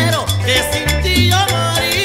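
Peruvian chicha (psychedelic cumbia) played by an electric-guitar band: gliding, bending guitar melody over a repeating bass line and a steady cumbia beat.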